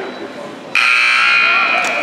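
Gym scoreboard buzzer sounding: a loud, steady electric buzz that starts abruptly about three-quarters of a second in and holds on, over crowd and bench chatter.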